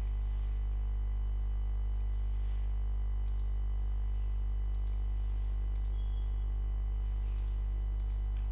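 Steady low electrical hum with a constant high-pitched whine above it, unchanging throughout.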